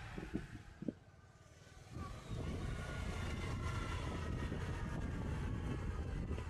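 Motorcycle or scooter riding: engine and wind noise come in loudly about two seconds in as the bike gets moving, and then hold steady. Before that, over a quieter stretch, there are a couple of light knocks.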